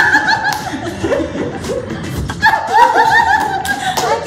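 Several people laughing together, high-pitched peals with a loud burst at the start, a lull, and a second burst about two and a half seconds in.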